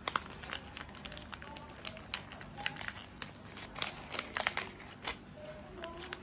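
Sheets of bouquet wrapping paper crinkling and rustling in the hands as they are folded and tucked around a bouquet's stems: a run of irregular small crackles, a little louder just past the middle.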